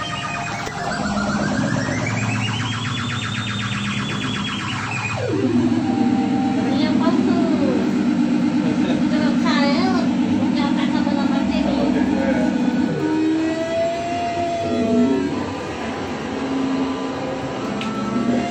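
Experimental live electronic music. A buzzy synthesized tone sweeps down, climbs and holds high, then plunges suddenly about five seconds in to a low steady drone, with scattered whistling glides and squeaks over it.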